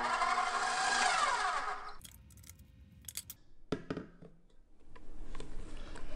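KitchenAid stand mixer running, its flat beater whipping cream cheese frosting. The motor whine drops in pitch and cuts off about two seconds in. A few clicks and a knock follow as the mixer is handled and the steel bowl comes off.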